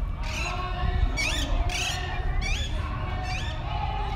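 A bird calling in a series of about five short chirps that sweep up and down in pitch, over a steady low background rumble.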